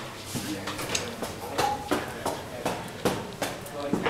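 Footsteps on a hard indoor floor at walking pace, with indistinct voices.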